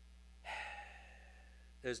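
A man's audible breath about half a second in, a soft rush that fades over about half a second, over a low steady hum. Speech begins near the end.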